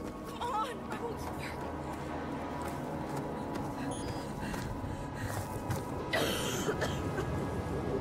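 Film soundtrack music with steady held tones throughout. A short vocal sound comes about half a second in, and a sudden loud rushing noise about six seconds in, as a dust cloud sweeps through a canyon.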